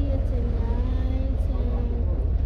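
Steady low rumble inside a moving passenger vehicle, with a girl's voice over it holding some long, level notes.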